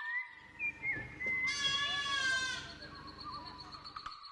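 A young goat bleats once about halfway in: a single high, drawn-out call lasting a little over a second and falling slightly in pitch.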